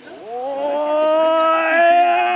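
Rangda performer's long howling cry from behind the mask. It slides up in pitch just after the start, then is held loud and steady on one note.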